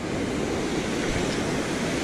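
Ocean surf breaking and washing up a sandy beach: a steady rushing noise.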